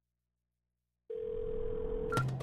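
Silence, then about halfway a steady telephone tone starts suddenly, with the hiss and narrow sound of a phone line.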